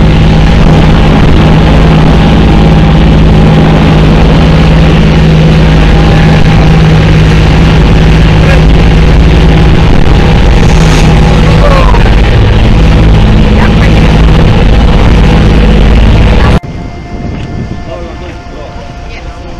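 Outboard motor of a small open motorboat running at speed, a loud, steady engine note with wind and rushing water over it. It cuts off abruptly near the end, giving way to a quieter, steady hum of boat engines.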